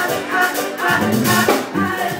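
Live band music with a steady beat, played on keyboard, drum kit and guitar.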